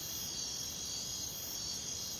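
Steady, high-pitched chorus of insects such as crickets, an unbroken buzzing hum.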